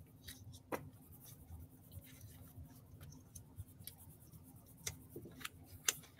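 Faint scattered clicks and light scratching from pens and paper being handled on a drawing desk, a few sharper ticks standing out, over a faint steady hum.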